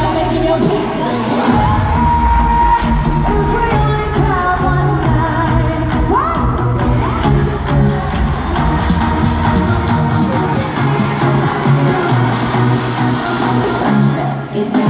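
Live pop music over an arena sound system, with a bass-heavy beat and a female vocal group singing, crowd noise underneath. A rising vocal swoop about six seconds in.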